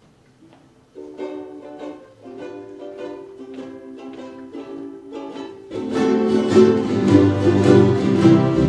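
Ukulele band playing: a few sustained strummed notes as an introduction, then about six seconds in the full group of ukuleles comes in much louder.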